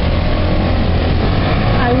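Street traffic noise: a loud, steady low rumble of vehicle engines.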